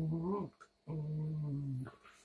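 Dogs play-wrestling, one giving long, low play growls: a first drawn-out growl ends about half a second in, and a second lasts about a second.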